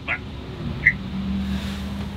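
A vehicle engine idling out of sight: a low steady hum. A single short electronic beep about a second in, typical of a phone's call-ended tone.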